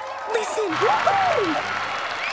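An audience applauding, with excited voices calling out over the clapping.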